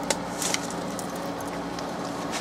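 A few brief light clicks from handling a stack of plastic cutting mat and rubber embossing mat on a die-cutting machine's tray as it is lifted, over a steady low hum.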